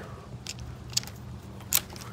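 Three short, sharp clicks as a flashlight held by a stretchy rubber strap is adjusted by hand on bike handlebars, the last click the loudest.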